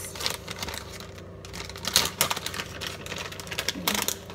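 Plastic bag of shredded cheddar cheese crinkling and crackling as it is handled and opened, in irregular sharp crackles, the loudest about two seconds in.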